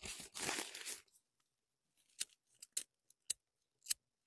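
Hand-picking leafy plants into a plastic bag: about a second of rustling from the bag and foliage, then a few short, sharp snaps as stems are picked.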